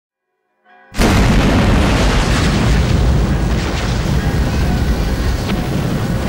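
A loud explosion boom begins suddenly about a second in, then dies away slowly into a long low rumble, with music underneath.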